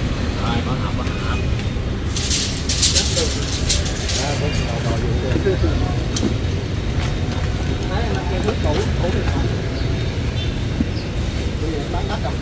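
Steady low rumble of street traffic, with a burst of clinking metal rattles about two seconds in as the steel load chains of lever hoists are handled.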